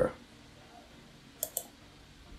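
Two quick computer mouse clicks, a fraction of a second apart, about a second and a half in.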